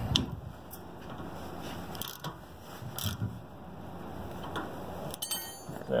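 Ratcheting box-end wrench turning the tension bolt of a mobile home tie-down anchor, its ratchet clicking at scattered moments and in a quick run of clicks near the end. The bolt is being tightened so that its square head pulls into the square opening of the anchor head.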